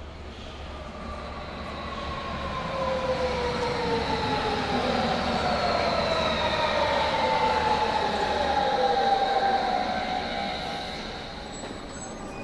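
Electric metro train pulling in, several whining tones from its motors falling slowly in pitch, growing louder and then easing off near the end.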